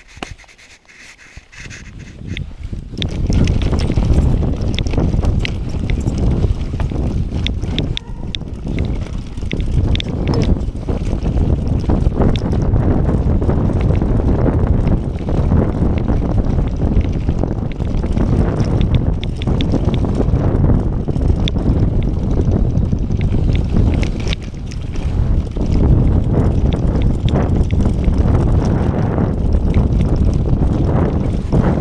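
Wind buffeting the camera microphone, with the mountain bike's rattles and clatter and its tyres running over a leaf-strewn dirt trail at speed. It starts quiet and picks up within the first few seconds as the bike gets going.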